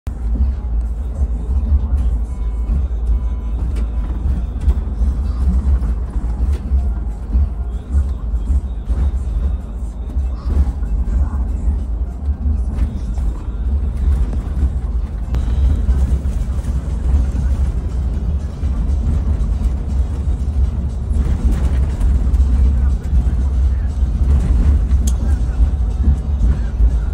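Steady low rumble of a coach bus on the move, heard from inside the passenger cabin: engine and road noise without any sudden events.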